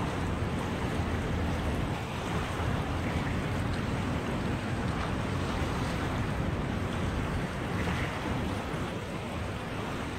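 Small river waves washing onto a sandy shore, with wind noise on the microphone; a steady wash with no distinct events.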